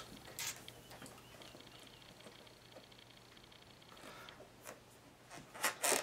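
Faint handling sounds of hands working at a small push-mower engine's fuel hose and carburetor fitting: a few small clicks and rubs. A thin high squeak runs through the middle, and a quick cluster of clicks comes near the end.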